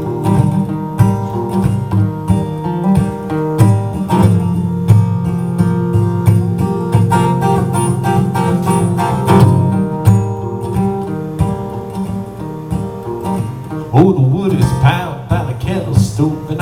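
Acoustic guitar played solo: an instrumental break of sustained chords in a folk song, with no singing until a voice comes back in near the end.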